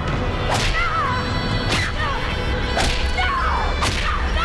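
Staged hand-to-hand fight sound effects: four sharp swishing blows about a second apart, each followed by a short rising-and-falling cry, over a steady low rumble.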